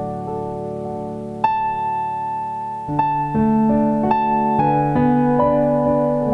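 Solo piano played on a digital stage keyboard: slow, sustained hymn chords from a medley of old cross hymns. A new chord is struck about a second and a half in, then a fuller chord with low bass notes about three seconds in, followed by moving melody notes.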